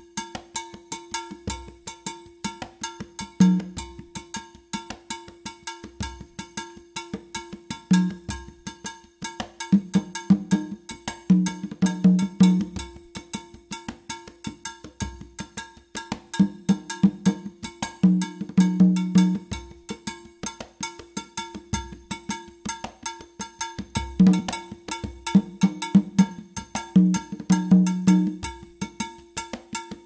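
A conga playing the improvising caja part of the Afro-Cuban güiro rhythm, with its low open tones coming in recurring phrases. Under it runs a steady cowbell pattern struck with a stick.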